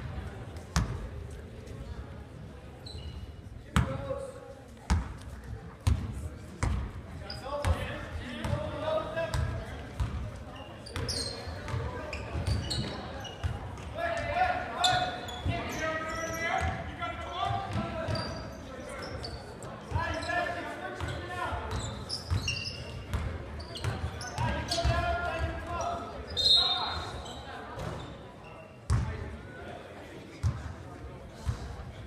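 A basketball being dribbled on a hardwood gym floor, with repeated sharp bounces ringing in a large hall, and voices talking and calling throughout.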